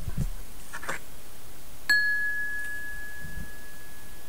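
A single bright, bell-like ding about halfway through: one clear high tone that rings on steadily after a sharp strike. A few faint soft noises come before it.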